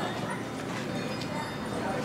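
Street ambience with indistinct background voices of passers-by.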